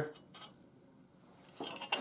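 A few light metallic clinks as a steel square is slid into place against steel on a steel welding table, most of them bunched together shortly before the end.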